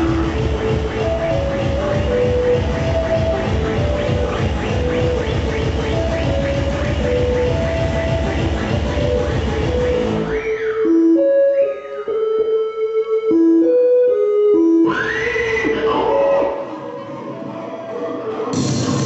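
Live chiptune breakcore: a dense electronic beat under a bleeping 8-bit square-wave melody. About ten seconds in, the drums and bass drop out, leaving the chip melody with a few falling zaps. A rising sweep near the end partly brings the texture back.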